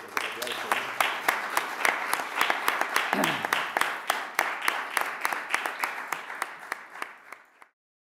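Audience applauding: a dense patter of hand claps that thins out toward the end and cuts off suddenly shortly before the end.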